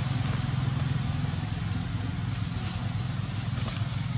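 A steady low motor hum under a light hiss, with a few faint small clicks.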